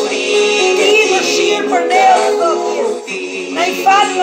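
A woman singing a worship song over musical accompaniment, her voice carrying a bending melody line throughout.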